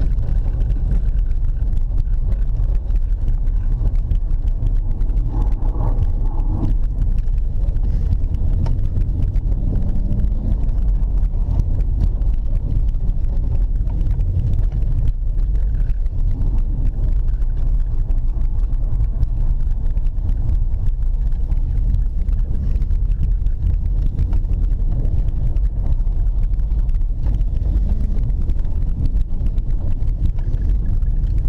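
Inside the cabin of a BMW 325ti Compact driven on snow-covered lake ice: the steady low rumble of its 2.5-litre straight-six engine under way, mixed with tyre noise on the snow and ice.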